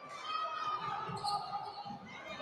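Voices of spectators talking in a gymnasium, with several dull thuds of the futsal ball on the wooden court, mostly in the second half.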